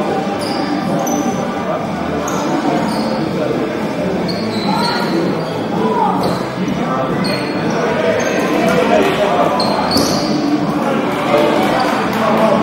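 Dodgeball play on a hardwood court in a large hall: rubber balls bouncing and striking, with many short shoe squeaks, under steady shouting and chatter from players and onlookers.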